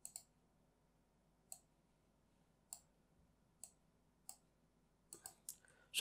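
Computer mouse button clicks: a quick double click at the start, then single clicks every second or so, with a few close together near the end.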